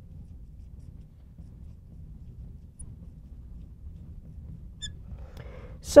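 Marker writing faintly on a glass lightboard over a low, steady room hum, with one short, high squeak of the marker tip about five seconds in.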